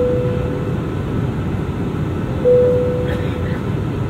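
Airbus A320 cabin chime sounding twice, a single tone each time that rings and fades over about a second, the second coming about two and a half seconds after the first. Both ring over the steady rush of cabin and engine noise in flight. It is the signal ahead of a cabin crew announcement.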